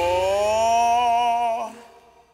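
A man's voice singing one long final note on its own after the band stops, the pitch rising slightly and wavering; it cuts off about a second and a half in and dies away in reverb.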